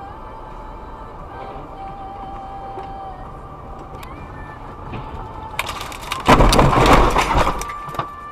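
Car running along a snow-covered road with steady engine and tyre noise. About five and a half seconds in comes a loud crashing rush lasting about two seconds as the car leaves the road and ploughs through deep snow and brush.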